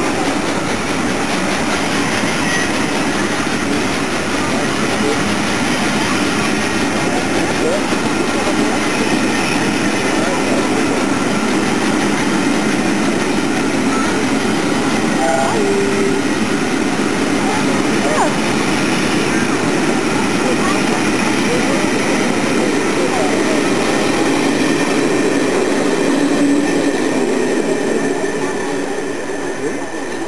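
A train of passenger coaches rolling past close by, with the steady noise of wheels on rails. The noise falls away near the end as the last coach passes and recedes.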